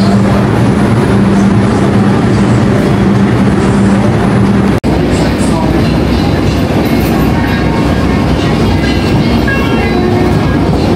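NYC subway car running, a loud rumble with a steady hum inside the car. It cuts off sharply about five seconds in, and a different loud, noisy sound follows.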